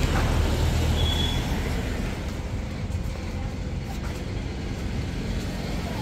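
Steady outdoor background noise with a low rumble that fades out about a second and a half in.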